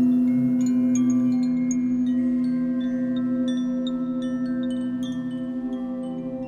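A Paiste gong, struck just before, rings on with a strong steady low hum and overtones, slowly dying away. Over it Koshi chimes tinkle, with scattered short high notes several times a second.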